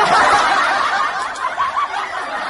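A crowd of people laughing together in a dense, continuous wash of laughter.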